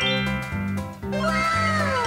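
Upbeat children's background music with a steady repeating bass line. About a second in, a pitched gliding sound effect enters over it, rising briefly and then falling away slowly.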